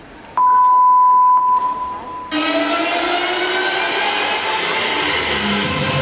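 A steady electronic beep about a second long, the signal that the gymnast may begin her floor routine. A little over two seconds in, the floor exercise music starts suddenly and plays on.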